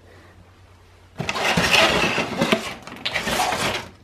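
A clear plastic advent calendar case holding tea lights and votives being turned over by hand. About a second in, a dense run of plastic crackling and knocking starts and lasts over two seconds, with a brief lull near three seconds.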